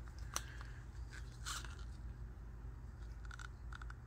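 Faint handling noises from a plastic paint cup and wooden stir stick held in gloved hands: a few soft clicks and light scrapes, the clearest a click about a third of a second in, over a low steady hum.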